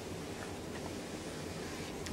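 Small electric treadmill running steadily with a low, even hum from its motor and belt.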